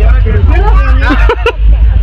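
Several people talking at once over a loud, steady low rumble.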